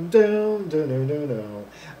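A man's voice singing a short wordless phrase of held notes that step up and down in pitch, imitating a saxophone line.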